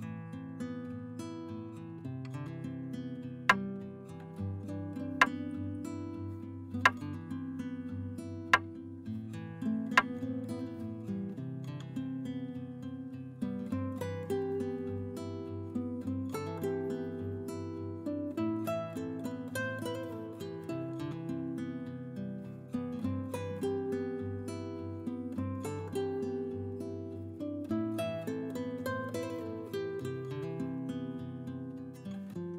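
Acoustic guitar music, plucked and strummed. In the first ten seconds five sharp knocks stand out above it, evenly spaced about a second and a half apart.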